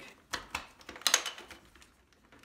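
Plastic clicks and clatter from a Shark upright vacuum's dust canister being unlatched and lifted off: two light clicks, then a louder cluster about a second in.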